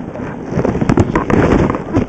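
Wind buffeting the camera microphone, heard as a loud rumbling rush broken by rapid crackling clicks.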